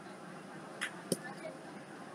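A pen finishing a word on paper, faint: a brief scratch and then one sharp click a little after a second in, over steady low room hiss.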